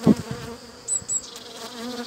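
Honeybees buzzing steadily around an opened hive as a frame of bees is lifted out, a colony that is starting to get agitated. A single sharp knock sounds just at the start.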